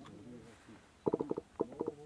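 A person laughing in two short runs of quick chuckles about a second in, over low background chatter.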